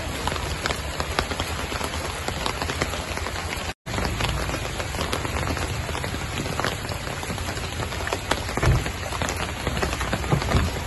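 Steady rain falling, heard as an even hiss dotted with many separate drop ticks. The sound drops out completely for a moment just before four seconds in.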